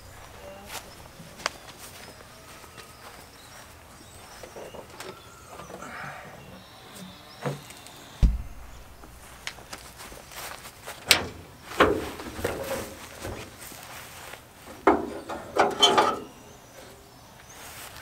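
Scattered knocks and clunks of car body panels being handled, with a single dull thump about eight seconds in. In the second half come clusters of clunks and rattles as the Civic's hood is unlatched and raised.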